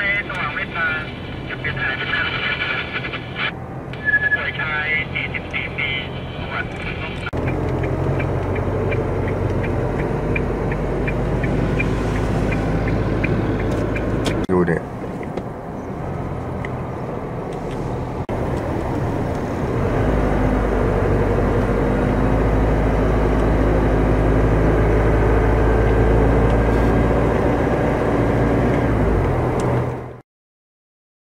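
Road noise inside a moving car's cabin: steady engine hum and tyre rumble, which grows louder and deeper about two-thirds of the way through. Voices are heard over it for the first several seconds.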